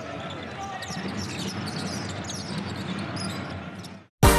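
Basketball game sound on a hardwood court: a ball bouncing over steady arena noise with many short, high chirps, and a commentator's brief "oh". It fades out just before the end.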